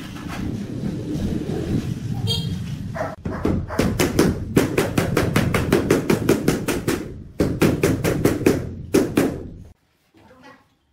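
Rubber mallet tapping a large ceramic floor tile down into its wet mortar bed to seat and level it: rapid sharp knocks, several a second, with a short pause partway through. The knocks follow a rough scraping noise at the start and cut off suddenly just before the end.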